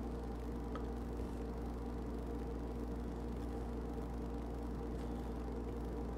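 Steady low electrical hum with a faint hiss, the background noise of the recording, with one faint tick about a second in.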